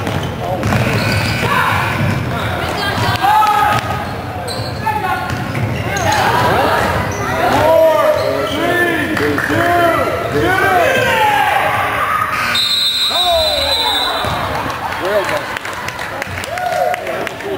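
Basketball game on a hardwood gym floor: a ball bouncing and many short sneaker squeaks as players cut and stop. A referee's whistle blows briefly about three-quarters of the way through.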